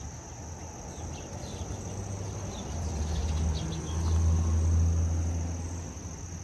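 A vehicle passing on the street: a low rumble that swells to its loudest about four to five seconds in and then fades away. Under it, a steady high-pitched insect sound runs on.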